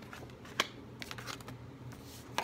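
Tarot cards being shuffled by hand: papery snaps and flicks, one sharp snap about half a second in and a quick run of softer ones around a second in.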